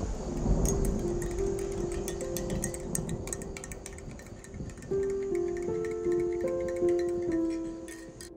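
A metal spoon stirring in a glass mug, clinking against the glass again and again, over slow music of long held notes that gathers into more notes about five seconds in and fades near the end.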